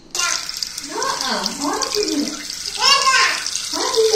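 Water running from a tap into a washbasin over a steel tumbler of homemade ice held under it to loosen it from the cup. The running water starts suddenly at the start.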